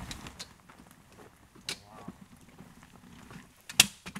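Telescoping metal ladder of a truck rooftop tent being extended: a couple of sharp clacks as the sections slide out and lock, the loudest near the end as the ladder comes down to the ground.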